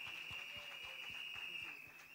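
Faint, scattered hand claps from a small audience after an acceptance speech, with a steady high-pitched tone running under them.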